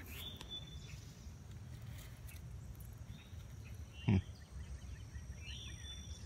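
Quiet outdoor ambience: a steady high insect drone, with a few short bird chirps near the start and again near the end over a low background rumble.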